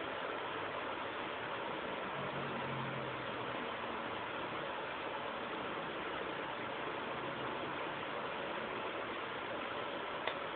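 Steady background hiss with no other events, with a faint low hum for about a second and a half starting about two seconds in.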